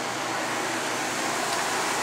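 Steady machinery noise, an even rushing hum with no rhythm or change in level.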